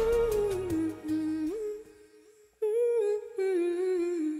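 The song's final held note and accompaniment die away, then after a moment of quiet a woman hums a short two-note phrase with closed lips, the second note slightly lower.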